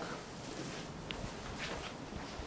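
Faint, soft barefoot footsteps on carpet over quiet room tone, with a small click about a second in.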